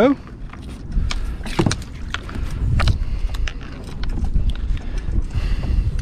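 Scattered knocks and clatter as a landing net holding a small bonnethead shark is brought aboard a fishing boat and handled against the gunwale, over a steady low rumble of wind on the microphone.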